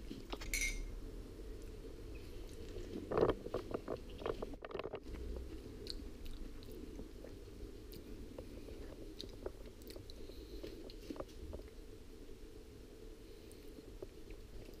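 African grey parrot crunching and nibbling a biscuit with its beak: faint, irregular small crunches and clicks, busiest about three to five seconds in.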